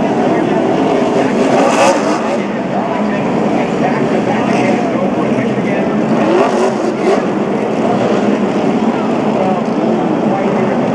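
NASCAR stock car's V8 engine revving through a tyre-smoking burnout, mixed with a crowd cheering and yelling.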